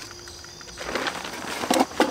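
Backpack fabric rustling as a titanium cook pot is pushed down into an ultralight pack, building up about a second in, after one sharp click at the start. Crickets chirp steadily in the background.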